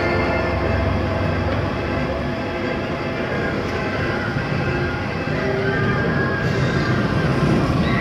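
Europa-Park monorail train running, heard from on board. It makes a steady rolling and motor noise, and a deep hum drops away about two seconds in.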